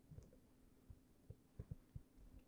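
Near silence: room tone with a faint steady hum and a few faint, short, soft taps.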